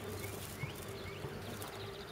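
Faint outdoor background: a steady low hum with a few short, faint rising bird chirps.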